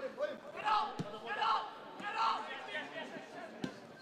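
Shouted calls on a football pitch, three short shouts, with two thuds of the ball being kicked, about a second in and near the end.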